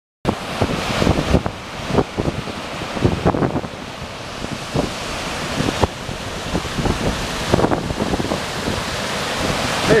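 High river water rushing over a low overflow dam and churning below it, a steady noisy wash, heavily buffeted by strong wind on the microphone in irregular low gusts. A voice starts right at the end.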